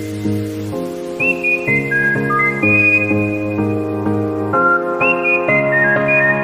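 Background music: a whistled melody over steady, gently changing chords.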